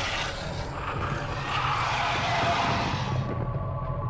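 Dramatic intro soundtrack: music with a steady low drone under a loud, rough sound effect that swells up about a second and a half in and fades before the end.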